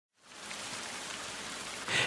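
Steady rain ambience fading in quickly and holding even, as a sound effect opening a hip-hop track; it swells briefly near the end.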